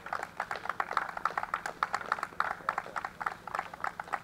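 A small crowd applauding, with many separate hand claps in an irregular patter.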